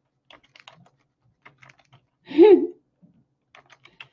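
Computer keyboard typing in short runs of key clicks, with pauses between the runs. A brief vocal sound from a woman, about two and a half seconds in, is the loudest sound.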